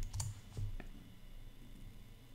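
A few faint computer keyboard keystroke clicks in the first second: the end of typing a search term and submitting it.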